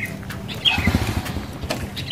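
A motorcycle engine idling steadily, with a bird giving a short falling chirp about two-thirds of a second in.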